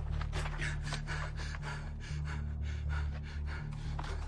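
A man gasping and panting hard for breath, about three heavy breaths a second, as he runs to exhaustion. Under it is a steady low drone from the film's music score.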